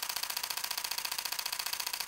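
Canon EOS R10 mechanical shutter firing a continuous high-speed burst at 15 frames per second: a fast, even rattle of shutter clicks.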